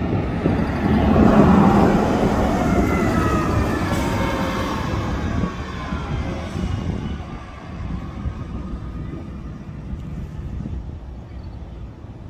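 Grande West Vicinity transit bus passing close by and pulling away, its engine and drivetrain whine loudest a second or two in and dropping in pitch as it goes by, then fading into general traffic noise.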